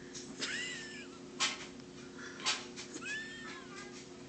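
A toddler's high-pitched excited squeals: two rising-and-falling calls, each under a second long, with a couple of short sharp knocks between them.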